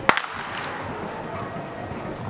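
A sharp blank-pistol shot just after the start, with a quick echo close behind it, over steady outdoor background noise. Typical of the gunshot test fired during off-leash heelwork with a German shepherd.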